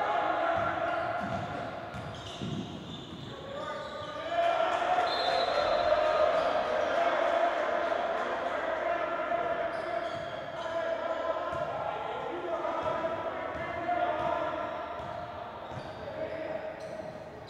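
A basketball dribbling on a hardwood gym floor, with indistinct shouts and voices from players and spectators.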